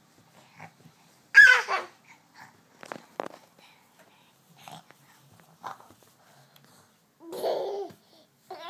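Six-month-old baby's brief high squeal about a second in, followed by a few faint clicks and small babbling sounds, and a short lower-pitched vocal sound near the end.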